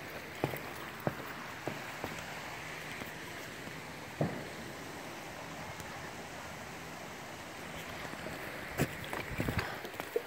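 Steady rush of a shallow creek running over rocks, with footsteps knocking on the swinging footbridge's deck: a few steps in the first couple of seconds, one louder knock a little after four seconds, and a quicker run of steps near the end.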